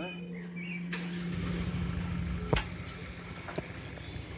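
Rusty steel frame bars knocking together as they are fitted at the corners, with one sharp metallic knock about halfway through and a few lighter clicks, over a low rumble that builds from about a second in.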